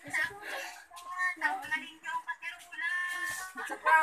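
Children's voices chattering and calling out in a sing-song way, with a few drawn-out notes near the end.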